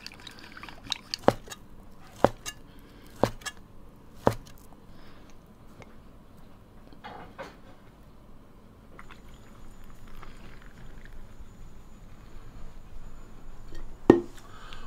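Chopsticks stirring sauce in a glass bowl, clinking sharply against the glass five or six times in the first few seconds. After that there are only faint handling sounds.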